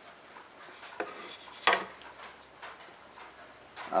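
A cedar wedge handled and set down on a plywood table top: a small click about a second in, then a sharper wooden knock shortly after, with faint rubbing between.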